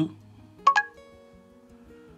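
Guitar music: two quick plucked notes, then soft held notes ringing on.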